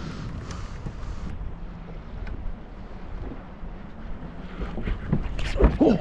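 Wind rumbling steadily on the microphone over choppy lake water around a small boat, with a few faint clicks. A man's startled "Oh" comes right at the end.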